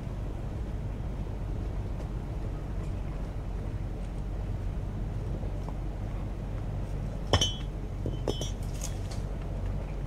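Truck engine idling steadily while a loose rock is moved off the trail: a sharp ringing clink of rock striking rock about seven seconds in, then a few lighter clinks.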